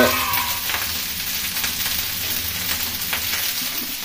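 A steady hiss with faint crackles running under the scene.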